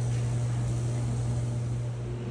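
Mr. Heater Big Maxx MHU50 gas unit heater's fan running with a steady low hum and an even rush of air.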